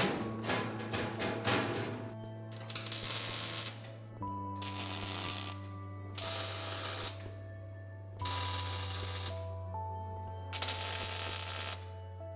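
MIG welder tack-welding sheet steel: about five short bursts of welding noise, each roughly a second long and a second apart, after a rapid run of clicks in the first two seconds. Background music of slow held chords plays throughout.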